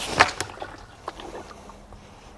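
Plastic wash bucket with a screw-on gamma seal lid, holding about five litres of water, handled and tipped onto its side: a couple of sharp plastic knocks near the start, then quieter handling with water shifting inside.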